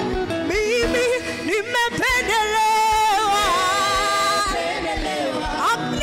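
Gospel song: a singing voice holds long, wavering notes over continuous backing music. The voice comes in about half a second in and pauses briefly near the end.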